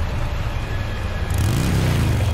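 A motor vehicle engine running with a deep rumble, revving up with a rising pitch about a second and a half in.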